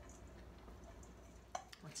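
Quiet kitchen room tone with a low steady hum, broken by one short sharp click about one and a half seconds in, just before a voice starts speaking.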